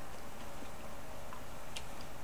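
A few faint, light ticks over a steady low background hum, with one sharper tick near the end.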